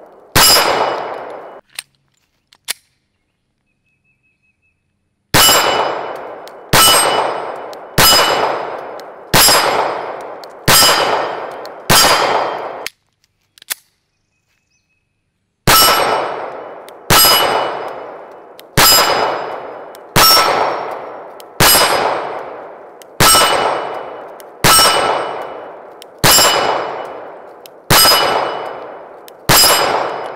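Compact 9mm pistol fired at steel plate targets. Each shot is followed by the ring of the struck plate. There is one shot, a pause of about five seconds, six shots about a second and a half apart, a short break, then ten more at the same pace.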